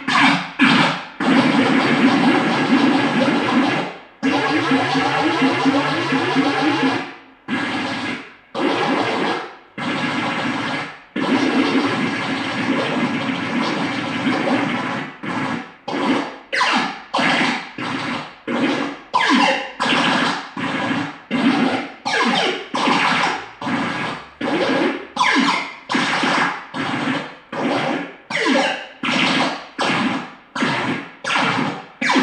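Electronic sounds from a handheld Korg Kaoss Pad: dense, noisy synth tones held for several seconds at a time, then chopped into short, evenly repeated pulses, about one and a half a second, from about halfway through.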